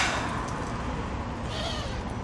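Steady outdoor street background noise with a low traffic hum, and a brief faint high sound about one and a half seconds in.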